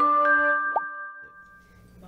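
Short musical logo sting: bell-like sustained notes ringing out and fading away, with one quick rising pop about three-quarters of a second in.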